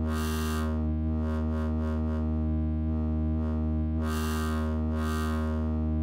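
Serum software synthesizer sounding one sustained low note, its bright, hissy upper tones swelling and fading several times while the pitch stays steady.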